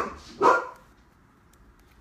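Two short, sharp vocal bursts about half a second apart, then only faint room noise.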